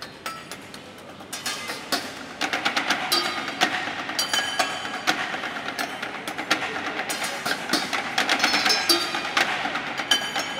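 Knives striking steel pots, pans and woks in an ensemble rhythm, each hit ringing at its own pitch. It starts sparse and soft, then builds and grows denser and louder from about two and a half seconds in.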